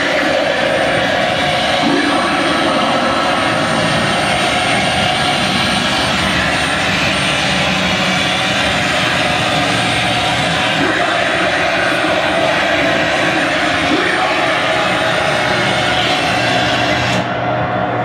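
Live harsh noise music: a loud, unbroken wall of distorted electronic noise from the performer's gear. Near the end the highest frequencies drop out and it thins slightly.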